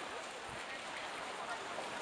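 Faint voices of people talking at a distance over a steady hiss of outdoor noise.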